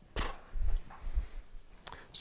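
Handling noise of a wheeled duffel bag being turned round and lifted on a tabletop: a few dull bumps, with a sharp click near the end.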